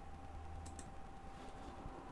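Two quick, faint clicks close together, about two-thirds of a second in, over a steady low electrical hum with a thin high tone.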